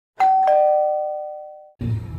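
Two-note ding-dong chime: a higher note and then a lower note about a third of a second later, both ringing out and fading before cutting off suddenly near the end.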